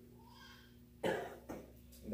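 A man coughing: one cough about a second in, then a smaller second one half a second later.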